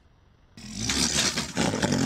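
An Amur tiger bolting out of its transport crate: a sudden loud rush of noise and clatter starting about half a second in.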